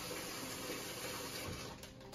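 Kitchen faucet running steadily, filling a plastic bag with water; the flow tails off near the end.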